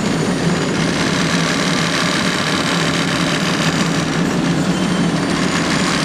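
Heavy road-construction machinery at work laying new asphalt, its engines running with a steady, unbroken mechanical noise over a low hum.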